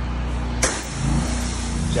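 Pressure washer's engine running steadily. About half a second in, the spray starts with a sudden hiss as the water jet hits the wet, chemical-treated concrete, and it keeps hissing after that.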